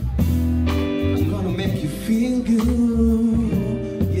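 Live funk and soul band playing: electric guitar, bass and drums, with a man singing a long held note in the middle.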